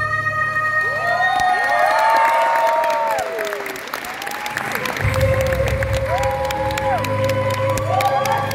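A live song ends on a long held note over the backing track, and an audience breaks into applause and cheering about a second in, with a low closing chord of the music returning near the middle.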